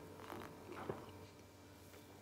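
Faint sips and swallows of blended berry juice, with a short click about a second in.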